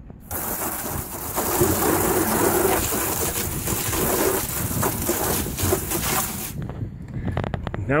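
Garden hose spray nozzle jetting water into an empty plastic garbage cart, adding water to cleaning solution: a steady rush of spray hitting the plastic that cuts off about a second and a half before the end, followed by a few light knocks.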